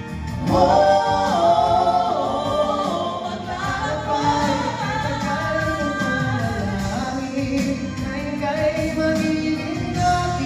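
Two male singers and a female singer performing a slow ballad together in harmony into handheld microphones, the voices swelling louder about half a second in.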